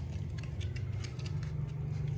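Puppies suckling at a mother dog's teats: irregular soft wet clicks and smacks, several a second, over a steady low hum.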